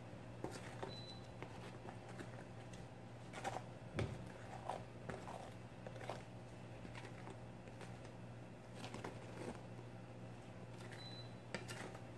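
Plastic spatula spreading grout over broken mirror pieces: faint, scattered scrapes and clicks of the blade on the glass, the loudest about four seconds in, over a steady low hum.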